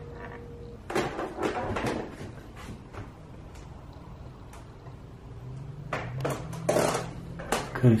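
Muffled, indistinct voices coming from another floor of the house, with a few knocks and bumps.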